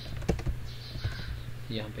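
A few computer keyboard keystrokes clustered in the first half-second, over a steady low hum.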